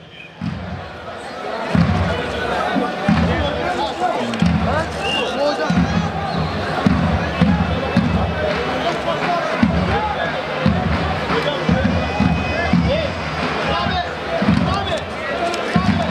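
Davul bass drums beating in an uneven rhythm of heavy low thumps, under a babble of men's voices.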